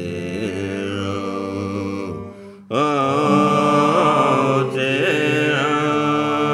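Folk group singing long held notes of the song's refrain in harmony over a steady low drone, pausing briefly about two seconds in before coming back louder on a new chord.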